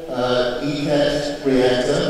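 A man speaking into a microphone, in continuous phrases with short breaks.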